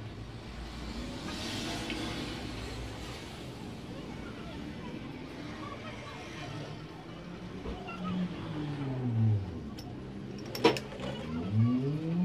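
10W hydraulic fork oil poured from a plastic bottle into a motorcycle fork tube, a faint trickle early on; in the second half a passing road vehicle's engine is heard, its pitch falling and rising again, with a few sharp clicks near the end.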